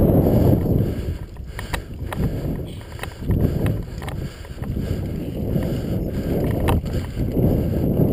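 Wind buffeting an action camera's microphone in surging gusts, with a few sharp clicks and knocks scattered through it.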